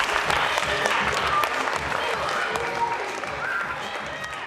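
Theatre audience applauding, with voices over the clapping; the applause fades away gradually.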